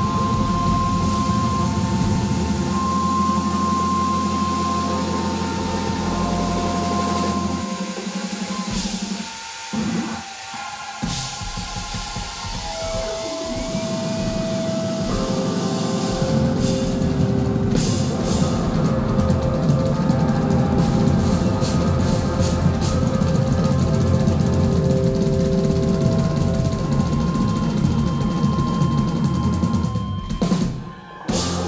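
Live instrumental music from a band of electric guitar, drum kit and synthesizer keyboards, with long held synth notes. The bass and drums drop out about eight seconds in and the full band comes back about seven seconds later.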